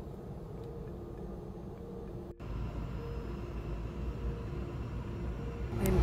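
Steady low rumble of airliner cabin noise in flight, with a momentary dropout a little over two seconds in.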